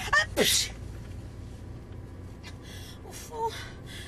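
A woman sneezing hard at the very start, a falling 'aah' into a noisy burst, set off by an allergy to the driver's perfume. After it, a steady low car-cabin rumble with brief soft vocal sounds about three seconds in.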